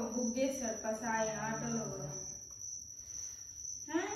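A voice speaking for about the first two seconds, then fading to a quieter stretch. A steady high-pitched tone runs unbroken underneath throughout.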